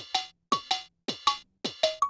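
Electronic, cowbell-like percussive blips in a steady rhythm, about four pairs of hits in two seconds. Each hit is short and bright, with a quick downward pitch drop.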